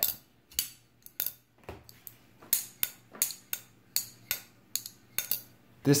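Benchmade 781 Anthem titanium axis-lock folding knife being worked over and over, its lock and ball-bearing blade giving a run of sharp metallic clicks, a little over two a second and unevenly spaced.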